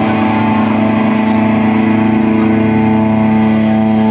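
Amplified electric guitars and bass holding one distorted low note, ringing steadily with no drum hits, just before the band launches into the song.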